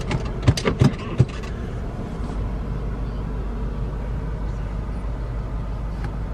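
A 2008 Buick Lucerne's 4.6-litre Northstar V8 idling steadily, heard from inside the cabin. A few sharp clicks come in the first second or so.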